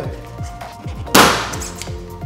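Background music with a steady beat. About a second in, a single loud, sharp clack: the Force Tamper's spring-loaded mechanism firing its head down onto the coffee puck in the portafilter basket.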